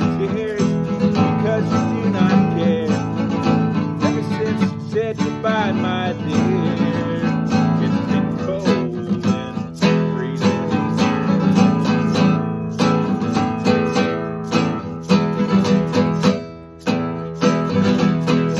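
Classical guitar strummed in a steady rhythm, chords ringing between strokes as an instrumental break in a slow song. The strumming dips briefly a few times near the end.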